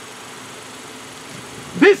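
A steady low engine hum, like a car idling, with a man's voice starting near the end.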